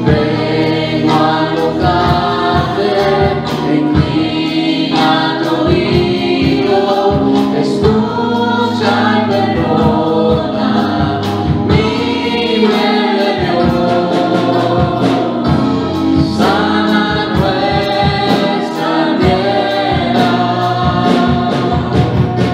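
Two women singing a gospel worship song into microphones through the church PA, with sustained sung notes over an instrumental accompaniment with a steady percussive beat.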